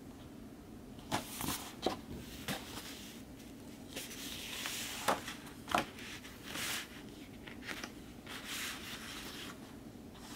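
Hands handling a vinyl album's glossy booklet and sleeve: several light taps and clicks in the first few seconds, then paper sliding and rustling as pages are turned and flattened.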